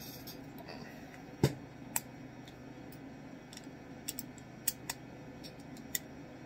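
Steel hand tools being handled: a dropped socket picked up and crowfoot wrenches clicking against each other and their holder. There is one sharp knock about one and a half seconds in, a lighter one just after, and a few small clicks near the end.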